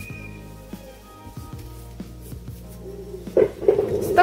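Background music with steady, sustained notes.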